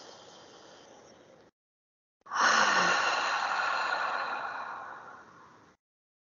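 A woman's slow, deliberate deep breath as a breathing exercise: a quiet inhale, then a louder, longer exhale. The exhale is a sigh that opens with a brief voiced note and fades out over about three seconds.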